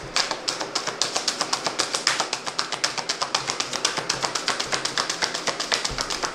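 A deck of reading cards being shuffled by hand, giving quick, even card slaps at about six a second.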